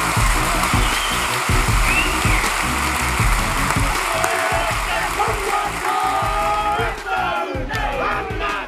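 Crowd clapping and cheering, with a group of voices chanting a haka in unison; from about four seconds in the voices hold long notes together.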